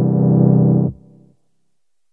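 A C major chord held on a software instrument in Ableton Live, triggered from three Push 2 pads: a steady chord that stops about a second in, with a short fading tail.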